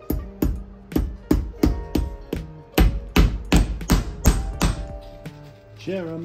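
A hammer driving horseshoe nails through an iron horseshoe plate into a leather boot heel: about fourteen quick, sharp strikes at roughly three a second, hardest in the middle. Background music plays under them.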